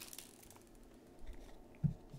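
Faint handling of trading cards: light ticks and slides as the cards are flipped through one by one, with a short low thump near the end.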